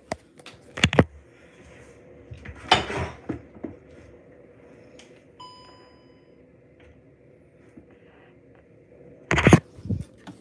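Phone camera being handled and set down on a kitchen counter: a few knocks and scrapes, a short electronic beep about five seconds in, and a loud knock of handling near the end as it is picked up again, over a low steady hum.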